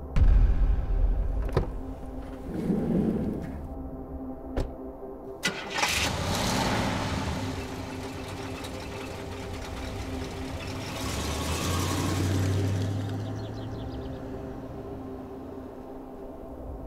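A few sharp clicks and knocks, then a car engine starting and running, swelling louder around eleven to thirteen seconds in, over a steady low drone.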